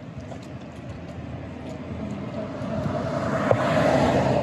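A motor vehicle approaching on the street, its engine and tyre noise swelling steadily louder and peaking near the end.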